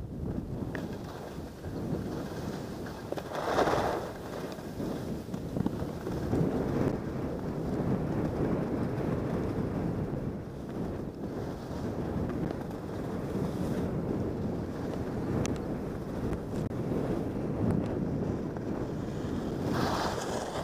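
Wind rushing over a helmet-mounted camera's microphone during a downhill ski run, mixed with the hiss of skis sliding on soft, ungroomed corn snow. One louder swell of scraping about three and a half seconds in.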